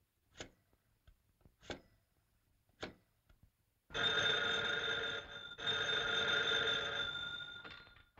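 Three faint clicks about a second apart, then a telephone bell ringing loudly. It rings in two long spells with a brief break between them, and the second fades out near the end.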